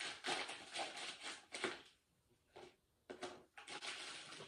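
Plastic poly mailer bag crinkling and rustling in irregular bursts as it is worked open, with a pause of about a second midway.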